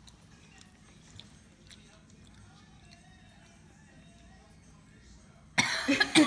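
Several seconds of quiet, then near the end a woman bursts into loud, harsh coughing, set off by the burning heat of very spicy instant noodles catching in her throat.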